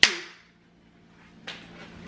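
A single sharp hand clap that rings briefly in the room and dies away, followed by a fainter click about one and a half seconds in.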